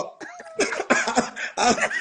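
Men laughing hard in short voiced bursts, heard through a video-call connection.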